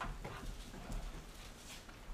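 Bible pages being leafed through: a few soft, brief paper rustles, with the loudest near the start and near the end.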